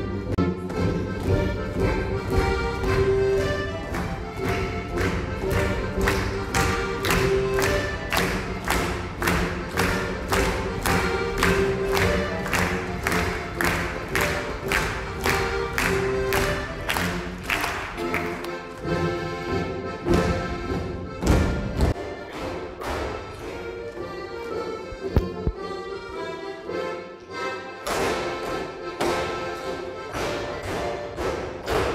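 Live folk-dance music led by an accordion, with the dancers' feet stepping and stamping on the wooden stage in time with the beat, about two steps a second. Past the middle the accompaniment thins out and there is one louder stamp.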